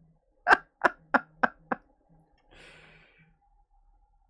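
A man laughing in five short breathy bursts, each weaker than the last, followed by a softer exhale.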